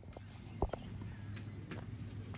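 Ballpark ambience: a steady low hum with a few short, sharp knocks, the loudest a little over half a second in.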